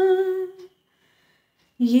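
A woman's unaccompanied singing voice holding a steady note with a slight waver, which dies away about half a second in. After a second of silence she comes in again on a lower note near the end.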